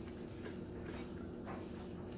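A few faint light clicks and rubbing from a small foam paint roller and a paintbrush working paint onto a grooved MDF dollhouse wall panel, over a steady low hum.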